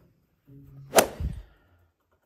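A whip-like swish transition sound effect: a brief build-up, then one sharp loud crack about a second in that dies away within half a second.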